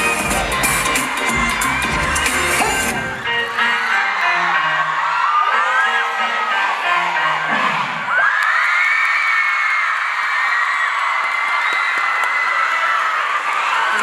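K-pop dance track played live: the full beat runs for about three seconds, then drops out, leaving a few sparse melody notes until the song ends about eight seconds in. An audience of fans then cheers and screams in high voices to the end.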